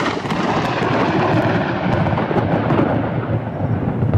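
Loud, continuous rolling thunder from a storm.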